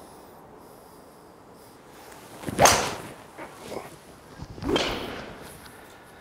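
A golf hybrid club swung at a ball: a swish that ends in a sharp strike about two and a half seconds in, then a second, quieter swish about two seconds later.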